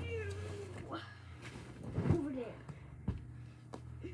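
Three or four short, meow-like calls, each gliding up or down in pitch, with two sharp knocks near the end over a steady low hum.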